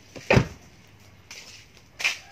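A car door of a 2009 Nissan X-Trail shut with one heavy thump about a third of a second in, followed by quiet handling noise.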